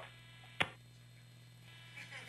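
Low steady electrical hum on the audio feed, with one short sharp click just over half a second in.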